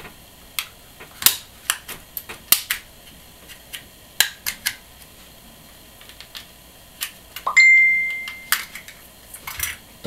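Snap-on plastic front faceplate of an SJ4000 action camera being pried off with a guitar pick: scattered sharp plastic clicks and snaps as its clips let go. About three quarters of the way through, a steady high tone sounds for about a second.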